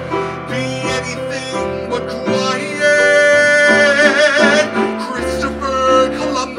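Live male vocalist singing long, held notes with wide vibrato, accompanied by piano and plucked upright bass.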